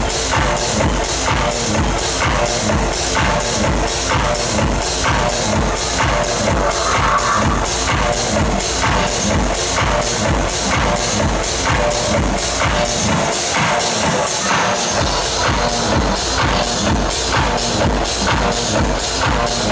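Techno played loud over a club PA: a steady four-on-the-floor kick drum about twice a second, with hi-hats ticking on top. The kick drops away briefly about two-thirds of the way through, then comes back in.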